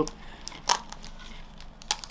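Lid of a small clear plastic pot being twisted and prised off against its tape seal: faint crinkling with two sharp plastic clicks, one about two-thirds of a second in and one near the end.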